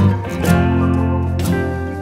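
Background music: strummed acoustic guitar chords, with strokes at the start, about half a second in and about a second and a half in.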